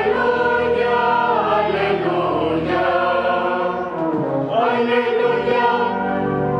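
Choir singing a slow liturgical chant in held notes; one phrase ends about four seconds in and the next begins.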